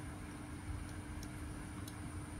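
Quiet room tone with a faint steady hum and a few soft ticks as a small diecast model car is turned in the fingers.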